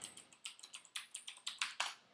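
Faint keystrokes on a computer keyboard: a quick, irregular run of about ten key presses as a login password is typed.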